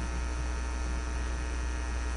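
Steady electrical mains hum on the microphone line: a low drone with a ladder of thin, steady higher tones above it.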